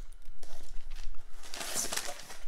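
Packing paper rustling and crinkling as a shipping box is unpacked, with small crackles throughout, growing louder in the second half.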